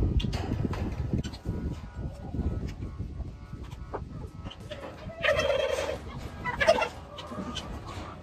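Displaying tom turkey gobbling about five seconds in, with a second, shorter call a little over a second later, over a low rumble in the first few seconds.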